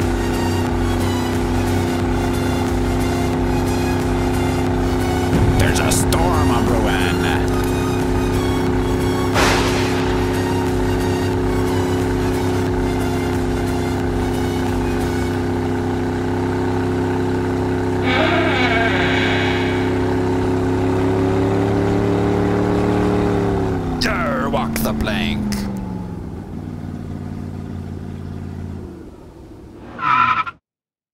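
An engine running at a steady pitch, then winding down with a falling pitch about three-quarters of the way through and fading out near the end. A few sharp clicks along the way.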